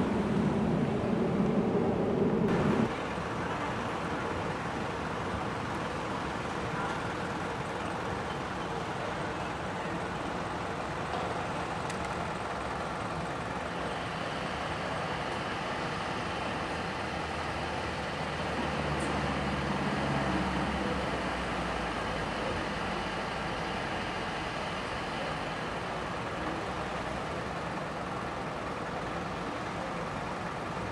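Outdoor street ambience with a steady traffic hum and faint voices. A louder low rumble stops abruptly about two and a half seconds in, and a vehicle engine swells louder around twenty seconds in.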